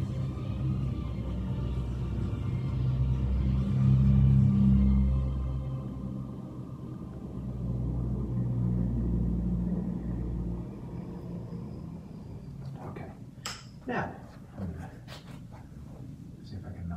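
A low machine rumble with a steady hum, swelling about four seconds in and then cutting off suddenly. A few sharp clicks and knocks follow near the end.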